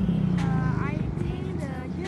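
A young woman speaking in short, halting phrases as she starts to answer, over a steady low hum that fades about a second in.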